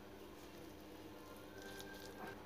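Very faint soft squishing of a spoon stirring mayonnaise into cooked chicken mince in a glass bowl, with a few light clicks near the end.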